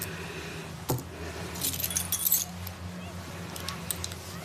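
A bunch of keys handled on a table, with a single knock about a second in and then a short jingle about half a second later. A steady low room hum runs underneath.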